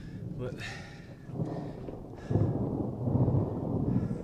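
A low, rough rumble that starts about a second and a half in and gets louder about two seconds in.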